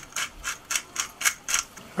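Hand pepper mill grinding peppercorns, a short rasping crunch with each twist, about three a second.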